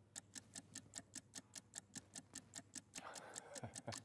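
Countdown-timer ticking sound effect: fast, faint, even ticks, about five a second.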